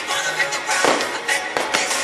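Aerial fireworks bursting and crackling, several sharp bangs in quick succession, over music playing throughout.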